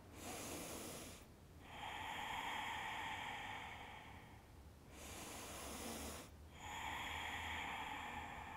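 A woman's slow, strong yoga breaths, about two full in-and-out cycles with each breath lasting two to three seconds. The breaths alternate between a thin, hissy sound and a fuller, rushing one.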